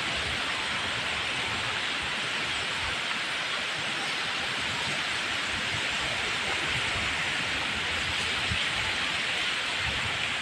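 Steady wind rushing across a phone's microphone, mixed with the continuous roar of surf from a rough, choppy sea.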